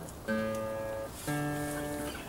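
Acoustic guitar being tuned: two single strings plucked about a second apart, each note left ringing. The strings have gone out of tune in the cold, the B string way out.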